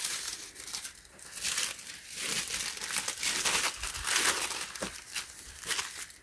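Thin white packing paper crinkling and rustling in irregular bursts as hands unfold and smooth it.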